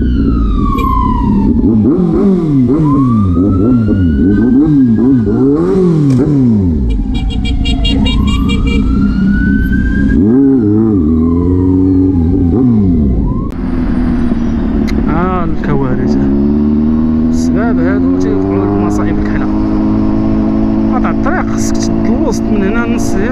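Kawasaki Z800 inline-four engine heard from the rider's seat, its pitch swinging up and down with quick throttle changes in slow traffic. A higher wailing tone rises and falls slowly over the first dozen seconds. From about fourteen seconds in, the engine pulls steadily up in pitch as the bike accelerates.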